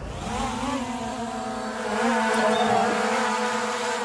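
Quadcopter drone propellers whirring as the motors spin up and the drone lifts off: a steady buzzing whine of several tones that wavers slightly and grows a little louder about halfway through.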